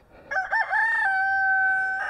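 A rooster crowing: a few short broken notes, then one long held note.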